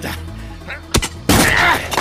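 Radio-play sound effect of a buried box being forced open with a tool: a sharp crack about a second in, then a louder burst of cracking and creaking as the lid gives way.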